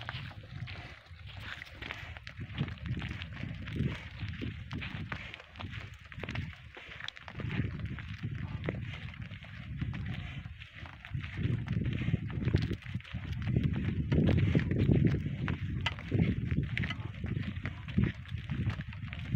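Hooves of a pair of bullocks clopping unevenly on a dirt track as they pull a loaded cart, over a low rumble that grows louder in the second half.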